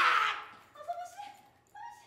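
A man's strained, pained cry that tails off about half a second in, followed by a few faint, short, high whimpers.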